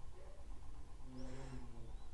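Quiet room tone with a faint, low-pitched animal call in the background, heard twice, the second time about a second in.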